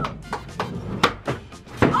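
Several sharp clacks and knocks of a skateboard against the floor of a moving truck's cargo box, spaced irregularly, with background music underneath.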